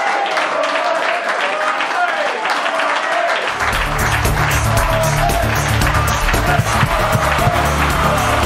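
Studio audience applause with music playing. About three and a half seconds in, a heavy bass line and beat come in as the show's closing theme starts.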